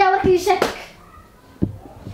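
A woman's high-pitched voice talking excitedly for under a second, then a short soft thump about one and a half seconds in.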